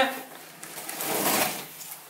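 A blade slitting the packing tape on a cardboard shipping box: one rasping cut that builds from about a second in and fades near the end.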